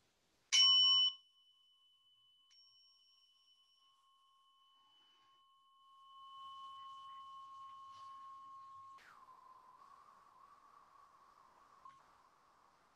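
A meditation bell struck once, marking the end of the sitting, its ring loud for the first half second and then dropping to a faint lingering tone of several pitches. About nine seconds in the tone slides quickly down, and a faint wavering tone follows.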